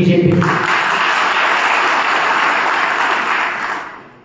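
Audience applauding: the clapping starts about half a second in, holds steady, and dies away near the end.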